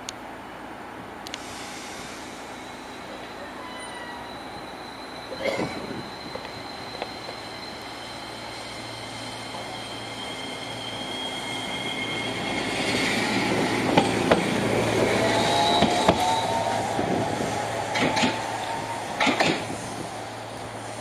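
Chikutetsu 5000-series low-floor tram (Alna Little Dancer Ua) running on rails. Its electric drive gives steady high whines, then grows louder, with a whine slowly rising in pitch over the second half. A few sharp clicks of wheels over rail joints come near the middle and near the end.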